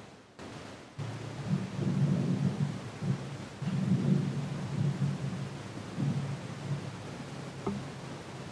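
A low, uneven rumble starting about a second in and swelling and fading, coming from a recorded video played back over the room's sound system.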